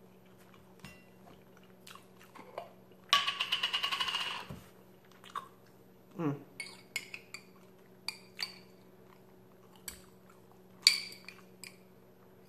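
Quiet eating sounds and small clicks of cutlery, broken about three seconds in by a rasping, scraping burst lasting about a second and a half. Scattered light clinks follow, with a sharper clink near the end as a metal fork goes into a glass jar of pickled beets.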